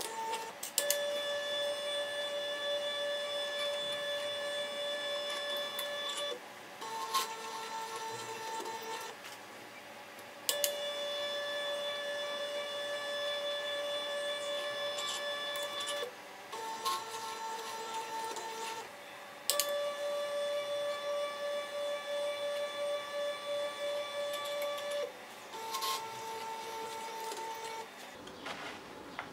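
Stepper motors of a small coil-winding machine running at a steady step rate as wire is wound onto a steel rod. The whine repeats three times: a longer whine of about five seconds, then a shorter one at a different pitch, each starting with a click.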